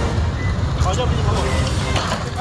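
Outdoor street sound from a phone recording: a steady low rumble with faint voices of people nearby.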